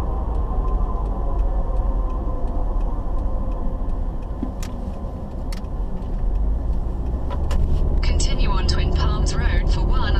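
Steady low engine and road rumble heard from inside a moving car's cabin. It eases a little around the middle as the car slows and builds again after. A few faint clicks come through it, and higher wavering sounds like voices come in near the end.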